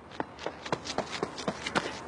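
Quick running footsteps on a track, short sharp steps about five a second that come slightly faster as the runner gets going off the start.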